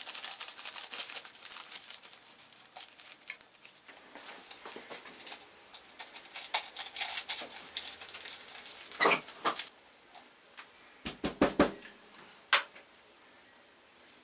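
Small sweetener packets being torn open and crinkled by hand as their contents are shaken into a mug: a dense run of sharp crackles, thinning out after about eight seconds, with a few soft knocks against the mug near the end.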